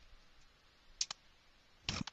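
Computer keyboard keys being typed: a quick double click about a second in and another click near the end, with faint room noise between.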